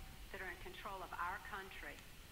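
A woman speaking in English, played back from a video and sounding thin and phone-like, with nothing above the middle of the voice's range.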